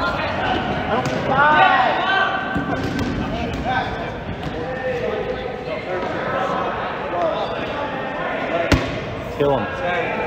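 Dodgeball game on a gym court: players' voices calling out, sneakers squeaking on the sports floor, and one sharp smack of a ball near the end.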